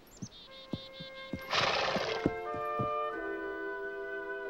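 A horse whinnies briefly near the start, with scattered hoof clops and a short burst of noise about a second and a half in. Orchestral score music fades in under it with held notes and becomes the main sound.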